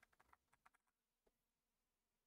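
Faint computer-keyboard typing: a quick run of clicks in the first second, then a single click, over near silence.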